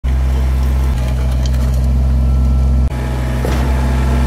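Kubota BX23 compact tractor-loader-backhoe's three-cylinder diesel engine running steadily while its backhoe digs a trench. The sound dips briefly about three seconds in.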